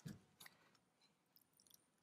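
Near silence, broken by two faint, brief rustles in the first half second as hands handle soil and onion seedlings.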